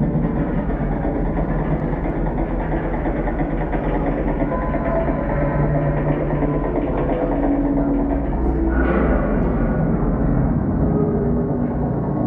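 Acousmatic electronic music played over loudspeakers: a dense, steady low rumbling texture with held drone tones, brightening briefly about nine seconds in.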